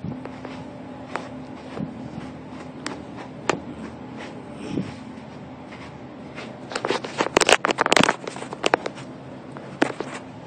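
A brush raking through a Great Pyrenees' thick, shedding coat: scattered scratchy strokes, then a quick run of louder strokes about two-thirds of the way through.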